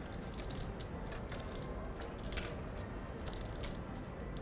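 Clay poker chips clicking against each other as players handle them at the table, in short bursts of rapid clicks over a low room hum.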